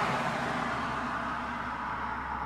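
Steady background rushing noise that fades slightly over the two seconds.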